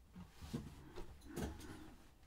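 Faint handling noise: a few soft taps and rustles as hands settle on an acoustic guitar before playing.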